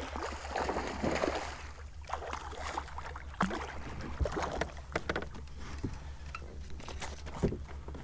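A hooked redfish thrashing and splashing at the surface beside a plastic kayak. The splashing comes unevenly, with a few sharp knocks.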